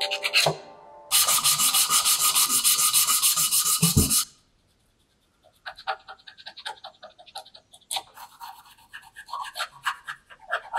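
Hand sanding of a cedar mallet handle. A fast, even run of short rubbing strokes with a faint steady tone lasts about three seconds, then stops. After a short silence come slower, uneven strokes.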